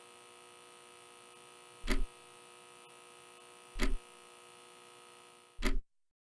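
A steady droning hum with three heavy, deep thumps about two seconds apart, a slow dramatic pulse. Everything cuts off suddenly just before the end.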